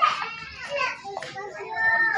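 Young children talking and calling out in high-pitched voices.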